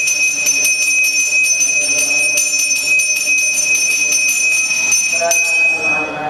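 Puja hand bell (ghanta) rung rapidly and without pause, giving one bright, high, sustained ring with quick strokes through it.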